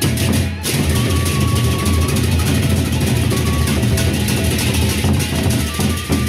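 Gendang beleq ensemble playing: large Sasak double-headed drums beaten with sticks in a fast, dense rhythm, with pairs of hand cymbals clashing over them. The drumming dips briefly just after the start, then drives on steadily.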